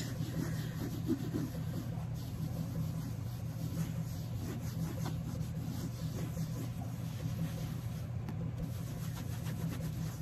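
A damp wipe rubbing in circles over Louis Vuitton's coated monogram canvas, working saddle soap in: a soft, continuous rubbing. A steady low hum runs underneath.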